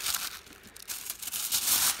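Album pages and their thin translucent interleaving sheets rustling and crinkling as they are handled and turned, with a louder crackle near the end.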